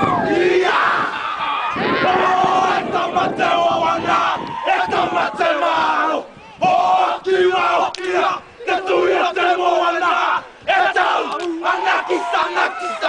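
A group of young men chanting and shouting a haka in unison, loud throughout, broken by a few brief pauses in the second half.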